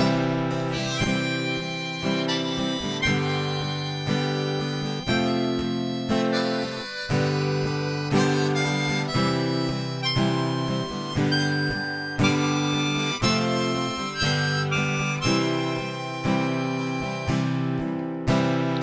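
Harmonica played from a neck rack, carrying a melody in held notes over two strummed acoustic guitars in an instrumental break, with no singing.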